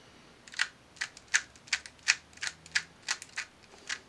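2x2 speed cube being turned through an algorithm: about ten sharp plastic clicks, roughly three a second, one for each face turn, starting about half a second in.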